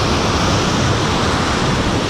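Ocean surf: waves breaking and foam washing up the beach in a steady rush.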